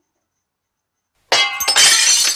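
A glass vase falling and smashing: a sudden loud crash about a second and a quarter in, followed by pieces of glass ringing and tinkling as it dies away.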